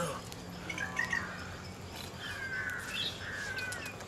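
Birds calling: a string of short chirps and a few longer falling calls, over a faint steady low hum.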